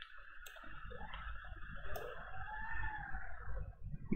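A few sharp computer mouse clicks, one about half a second in and another about two seconds in, over a steady low background hum.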